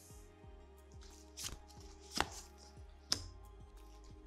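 Tarot cards being drawn from the deck and laid down on a wooden table: three sharp card snaps and taps, the loudest about two seconds in, over a faint steady low background tone.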